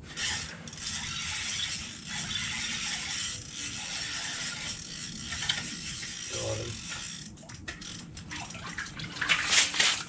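Frostbite Diesel 1000 ice-fishing reel cranked steadily, its gears whirring, as a hooked walleye is reeled up. In the last few seconds a run of sharper clicks and knocks comes as the fish nears the hole.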